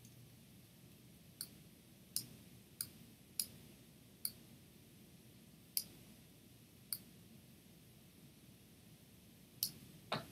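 Computer mouse clicking: about eight faint, sharp single clicks at irregular intervals.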